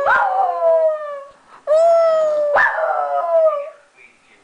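Small terrier-type dog howling in distress at being separated from her companion dog, who has been taken away. It is a run of long howls, about three, each sliding up briefly and then falling slowly in pitch.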